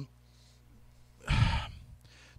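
A man's single sigh about halfway through, a short breathy exhale after a second of near silence.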